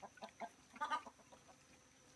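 Newborn piglets making faint, short, chicken-like clucking grunts, one call a little louder about a second in, with small clicks from the sow feeding among them.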